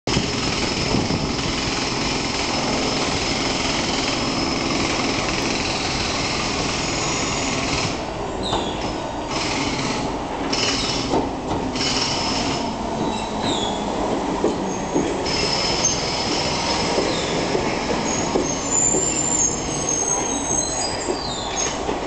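London Underground C Stock train running into the platform and braking to a stop, with a steady rumble of wheels on rail and high-pitched wheel squeal throughout, and sharper, higher squeals in the last few seconds as it comes to a halt.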